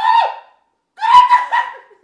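A dog whining: two high-pitched whines, the first dropping in pitch as it ends about half a second in, the second running from about one second in almost to the end.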